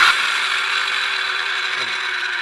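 A Skilsaw 7-1/4-inch circular saw's motor starts suddenly and runs steadily at full speed, its blade spinning free in the air. The saw is faulty: the owner says it keeps going even with his finger off the trigger.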